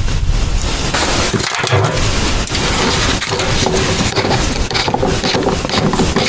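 The plastic pump top of a 4-litre hand pressure sprayer is being twisted and unscrewed, its plastic threads rubbing and scraping. This runs under a loud, steady rushing noise.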